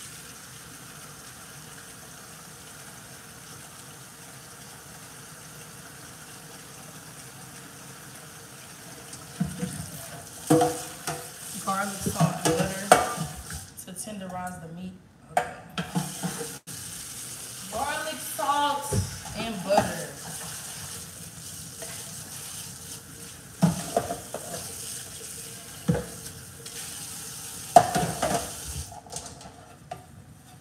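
Frying pan sizzling steadily, then, about nine seconds in, clatter and scraping of pans and utensils being handled, with several sharp knocks spread through the second half.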